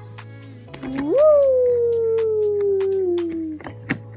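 A child's long drawn-out vocal call that jumps up in pitch about a second in, then slides slowly down for nearly three seconds, over background music.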